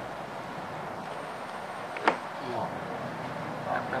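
Steady background noise with one sharp click about halfway through, followed by faint low voices.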